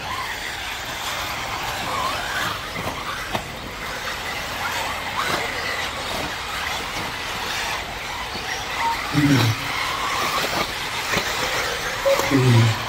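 Several 1/8-scale off-road RC buggies racing, their motors whining up and down in pitch as they speed up and slow down through the corners. A short, louder low sound comes about nine seconds in.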